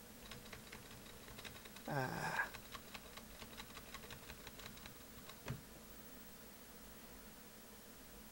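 Faint computer keyboard typing: a run of quick, irregular key taps while a line of code is edited, ending in a single louder click about five and a half seconds in.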